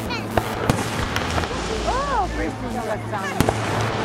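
Fireworks display: aerial shells bursting overhead with sharp bangs, several in the first second and a close pair of the loudest about three and a half seconds in.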